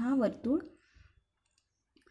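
A voice speaks briefly, then a marker pen scratches faintly on paper with a few light clicks.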